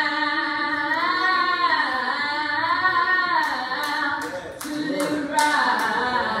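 A solo voice singing a slow church song in long, sustained notes that swoop and bend in pitch. There are several sharp clicks in the second half.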